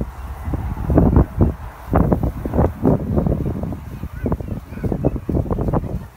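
Wind buffeting the microphone in irregular, rumbling gusts, strongest in the first half.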